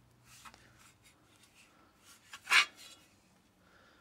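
Flanged copper boiler plates being handled and rubbed against hands and bench: faint rubbing and scraping, with one brief louder scrape about two and a half seconds in.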